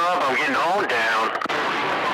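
A man's voice coming over a CB radio channel, noisy and distorted. About one and a half seconds in it breaks off, leaving the hiss of the open channel.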